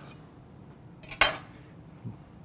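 A single sharp clack of a knife striking a wooden cutting board as a lime is cut in half, with a faint tick just before it, a little over a second in.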